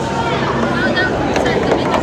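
Busy hall hubbub: overlapping children's voices and chatter over a steady low hum.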